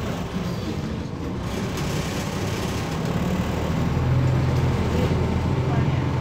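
Interior sound of a MAZ 206.085 city bus under way: its Mercedes-Benz OM904LA four-cylinder turbodiesel drones steadily with road noise. The engine note grows louder about four seconds in.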